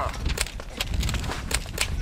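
Quick, hard footfalls of people running on concrete, about four steps a second.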